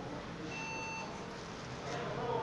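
A PC's built-in speaker gives one short electronic beep about half a second in, over a steady low hum. This is the startup (POST) beep of an HP Compaq 6005 Pro SFF desktop as it reboots.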